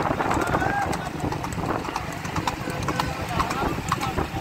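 Horse hoofbeats clattering quickly on a paved road as horse carts race, with men's voices shouting over a steady low rumble.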